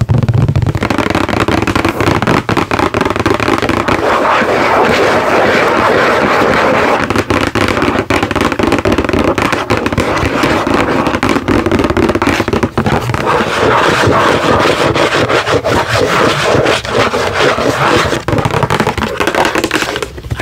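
Long press-on fingernails rapidly tapping and scratching on a cardboard product box held close to the microphone, a dense crackle of clicks and scrapes.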